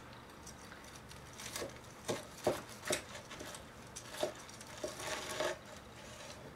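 Kitchen knife sawing through the crisp panko crust of a freshly fried chicken cutlet: a scattered series of short crunches and crackles, thickest near the middle and near the end.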